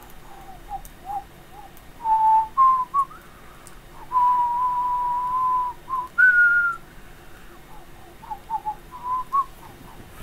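A person whistling a slow tune: a few short notes, then a long held note in the middle, a higher note just after it, and some quick short notes near the end.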